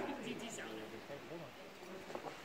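Indistinct talking, fainter after the first second, with no words clear enough to make out.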